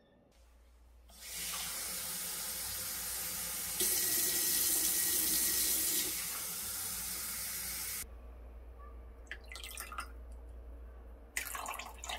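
Kitchen faucet running water over glass tumblers in a stainless-steel sink. The stream grows louder for about two seconds in the middle and shuts off about eight seconds in, followed by a few light knocks.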